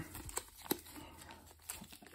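Foil wrappers of sealed Pokémon booster packs crinkling softly as a handful of packs is shuffled and counted through in the hands, with a few faint sharp crackles.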